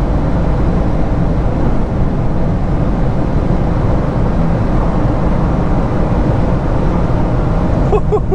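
Interior noise of a VW Golf R Mk8 still accelerating at around 260 km/h: a steady rush of wind and tyre noise with the engine's 2.0-litre turbocharged four-cylinder droning under load.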